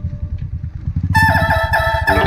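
Motorcycle engine running under way, a steady low pulsing. About halfway through, electronic background music with a stepped melody comes in over it and becomes louder than the engine.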